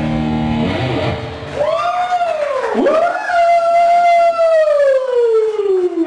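Electric guitar through an amplifier: a chord rings out, then a single sustained note arches up and down in pitch and slides slowly down into a long low dive, as from a tremolo-bar dive bomb.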